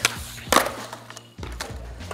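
Skateboard landing on concrete: a light click at the start, then a sharper, louder clack about half a second in as the board comes down, with a few fainter ticks after. Background music with a steady low bass runs underneath.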